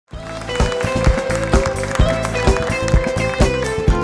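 Live band playing an upbeat pop song: strummed acoustic guitar and keyboard over drums, with a strong steady beat about twice a second. The music starts right at the opening.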